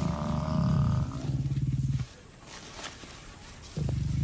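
Lions growling low and rough as they wrestle a buffalo bull down. About two seconds of loud growling give way to a quieter spell, and the growling starts again loudly just before the end.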